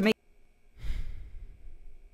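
A spoken word cut off, then a pause, then one breathy sigh of about a second from a person.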